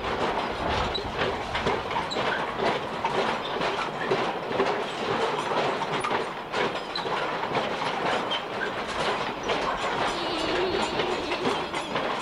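Small kiddie-ride car rattling and clattering along its track as it runs, a steady busy clatter of wheels and metal.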